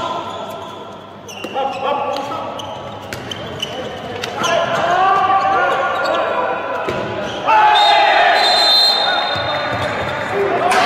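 A handball bouncing on an indoor court, with players shouting, in an echoing sports hall. The shouting is loudest for a second or so from about two thirds of the way in.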